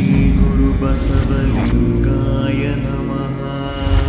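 Logo-animation music: a sustained low drone of held tones, with a brief rushing sweep about a second in.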